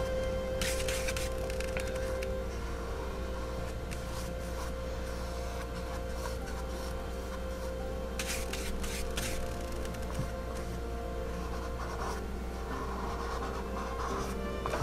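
Soft background music with the scratchy rub of a flat paintbrush working acrylic paint, heard in two spells: about a second in and again around eight seconds in.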